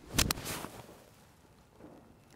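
Golf iron striking a ball off grass turf: a sharp crack about a fifth of a second in, a second click right after it, and a brief swish of the club through the grass.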